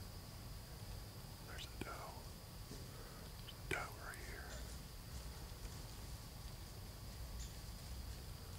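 Faint whispering: two brief whispered bursts, one about one and a half seconds in and one near the middle, over a low steady hiss.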